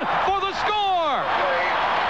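Excited radio play-by-play voice, with a long falling shout about half a second in, over a haze of stadium crowd noise.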